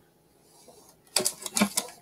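A foil Pokémon booster pack crinkling as it is handled, a quick run of crackles starting about a second in.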